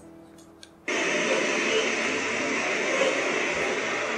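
Faint background music, then about a second in a steady wash of outdoor city street noise cuts in abruptly and holds even.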